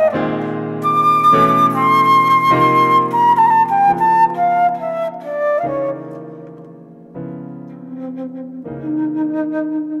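Improvised flute and piano duet: the piano strikes a chord every second or so while the flute holds a long line that slowly steps down in pitch. The music fades to its quietest a little past the middle, then picks up again with new chords and a lower flute note.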